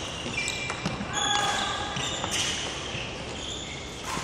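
Sports shoes squeaking and feet landing on an indoor court floor during badminton footwork drills: several short, high squeaks with light footfalls between them.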